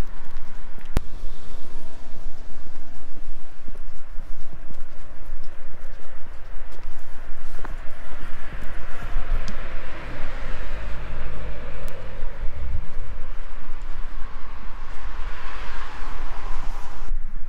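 Footsteps walking on brick paving, heard through a body-worn camera's microphone, with a low rumble throughout and a few sharp clicks.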